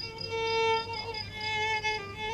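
Violin playing a melody in the Iraqi rural Mohammadawi style, with a long held note in the first half followed by shorter notes.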